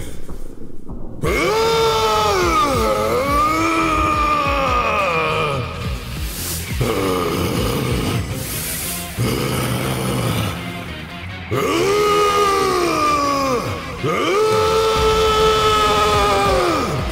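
A man's voice giving several long, drawn-out shouted battle cries, each held for two to four seconds and bending in pitch, with music behind.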